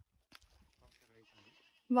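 Quiet outdoor background with a few faint scuffs and a faint, short pitched call about a second in. A loud voice starts right at the end.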